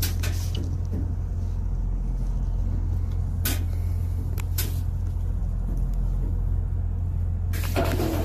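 A steady low droning hum, with a few sharp clicks: one just after the start and two more a few seconds in. A rushing hiss comes in near the end.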